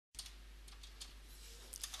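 Faint room tone from the voice-over microphone, a steady low hiss with mains hum, carrying a few soft clicks. It comes in just after total digital silence at the start.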